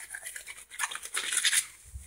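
Irregular scratchy rubbing noise close to the microphone, mostly high-pitched, growing louder toward the middle and fading near the end.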